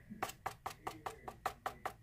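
A glitter-coated card tapped edge-down against the work surface over and over, about six quick taps a second, knocking the loose excess glitter off.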